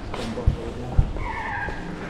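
Two dull knocks of the camera being handled and carried, about half a second apart, then a short squeak lasting about half a second.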